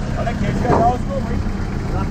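Old jeep's engine running low and steady, with a man's short call about halfway through.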